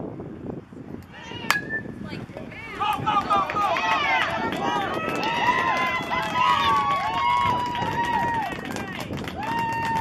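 A bat hitting a pitched baseball once, about a second and a half in: a sharp crack with a brief ring. Then many spectators shouting and cheering, with long drawn-out calls, as the batter runs.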